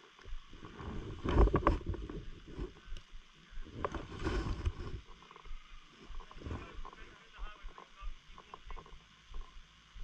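Wind buffeting the microphone, with two strong gusts about a second in and around four seconds in, over short crunching footsteps on packed snow.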